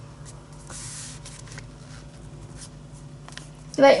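Soft rustling and light taps of a hand and a marker pen on a paper workbook page, with a brief louder rustle about a second in. A woman starts speaking near the end.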